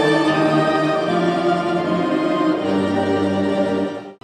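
Tamburica orchestra of plucked tamburicas with bass tambura playing, holding long sustained chords. The music cuts off abruptly at the very end.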